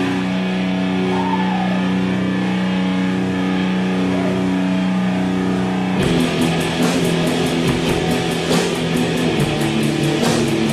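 Heavy distorted electric guitar holding a ringing chord, then a full drum beat with cymbals comes in with the guitar about six seconds in: sludgy stoner rock from a one-man band playing drums and guitar at once.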